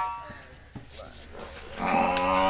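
The last dhol strokes and a voice die away, leaving a quieter stretch with a few faint taps. Near the end a loud, long call starts, held on one steady pitch.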